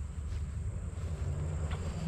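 Low, uneven wind rumble on the microphone, with a faint steady high-pitched insect drone above it.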